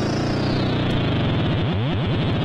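Modular synthesizer patch run through resonant filters, a dense buzzy drone. The treble closes down about halfway through, and a rising filter sweep follows near the end.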